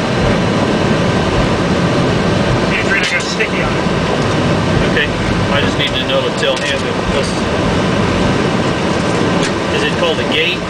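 Steady flight-deck noise of a Boeing 757-200ER taxiing after landing: engines at taxi power with cockpit air and equipment noise.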